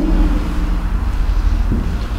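A steady low rumble of background noise during a pause in speech, with a faint steady hum that stops shortly before the end.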